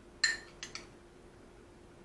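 A spoon clinking against a bowl: one sharp clink, then two lighter taps, all within the first second.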